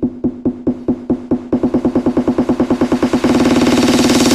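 Terrorcore intro build-up: a distorted drum-machine kick roll speeding up, the hits running together into a continuous buzz about three seconds in, with a rising hiss building over it.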